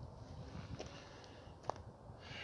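Quiet outdoor background with a single faint, sharp click near the end.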